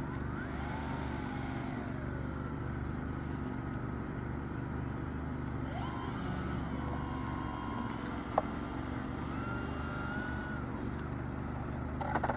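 A small electric motor whines up and down several times, each time rising in pitch, holding briefly and falling away, over a steady low rumble. A single sharp click comes about eight and a half seconds in.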